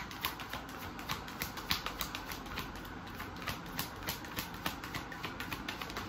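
A deck of tarot cards being shuffled by hand, the cards clicking against each other in a quick, uneven run of light clicks, several a second.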